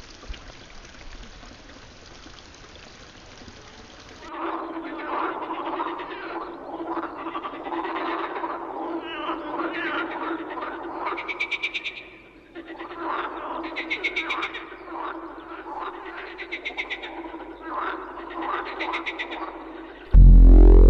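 Faint hiss, then from about four seconds in a chorus of frogs croaking, with rapid pulsed trills every few seconds over a steady tone.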